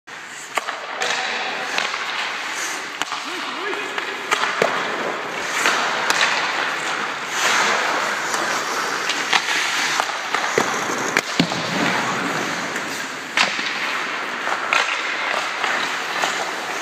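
Hockey skate blades scraping and carving on ice, with sharp clacks of sticks hitting pucks and pucks striking the boards every second or two.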